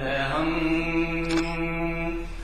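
A man singing a college anthem solo in a chant-like style. After a short phrase he holds one long note for about a second and a half.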